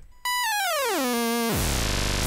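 A Native Instruments Massive synth oscillator with key tracking off, its pitch knob being turned down. The held tone starts about a quarter second in and glides steadily down about two octaves over a second, holds briefly, then drops to a much lower, buzzy tone near the end.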